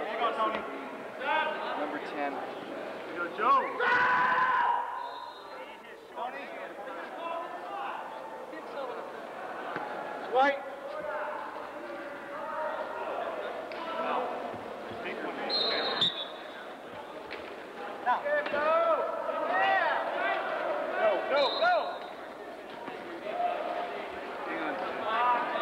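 Wheelchair rugby play on a hardwood gym floor: the ball bouncing, wheelchair tyres squeaking briefly as players turn and push, and a couple of sharp knocks, under players' and spectators' voices.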